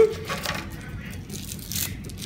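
Plastic toy packaging being handled: light clicks and crinkles of a foil wrapper and the plastic ball's shell, with a louder crinkle near the end.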